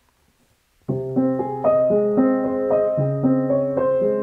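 Solo Yamaha upright piano starting to play about a second in, after near silence: a low bass note under a slow, gentle pattern of ringing notes and chords that change about every half second.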